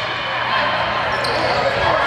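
Indoor volleyball rally: players calling and spectators' voices over each other, with hits of the ball on hands and arms, echoing in the gym.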